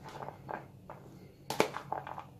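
Fingers stirring diced beetroot and onion in a plastic food container: a few short, sharp clicks and taps of the pieces against the container, the loudest about one and a half seconds in.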